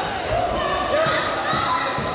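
Voices shouting in a reverberant sports hall during a karate bout, with a few dull thuds.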